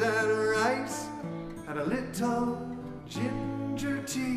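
A man singing a slow folk lullaby to his own strummed acoustic guitar. He holds a wavering note near the start and begins a new phrase about halfway through.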